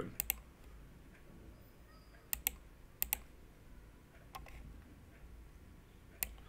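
Computer mouse clicking: a quick double click at the start, two more pairs of clicks around two and three seconds in, and a single fainter click a little after four seconds, with quiet room tone between.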